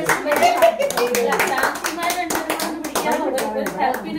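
A small group clapping their hands, many quick claps that are not in unison, with voices talking over them.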